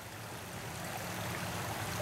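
Creek water running: a steady, even rush.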